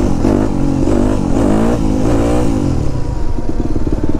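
2010 Yamaha 250 YZF dirt bike's single-cylinder four-stroke engine blipped up and down repeatedly while the bike is held on its back wheel in a coaster wheelie, its pitch rising and falling about twice a second.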